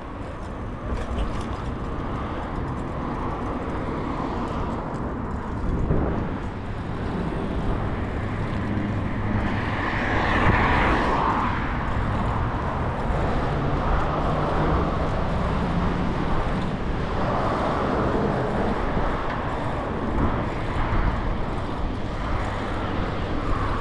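Road traffic: motor vehicles passing over a steady low rumble, with one pass swelling loudest about ten seconds in.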